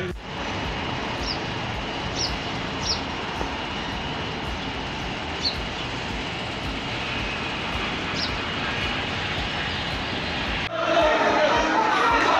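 Steady outdoor background noise with a few short, high chirps scattered through it. Near the end it cuts suddenly to a louder crowd of many voices.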